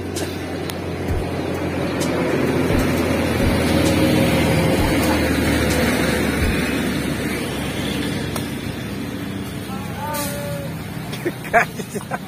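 A road vehicle passing by: engine hum and tyre noise that swell to their loudest about four seconds in and then fade away.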